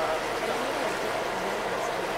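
Steady rushing background noise aboard a boat on open water, with faint voices in the background.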